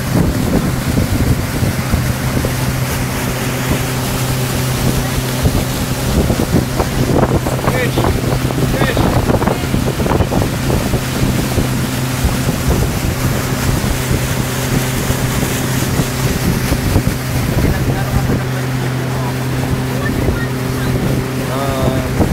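Motorboat engine running at a steady cruising speed, a constant drone, with water rushing along the hull and churning in the wake. Wind buffets the microphone.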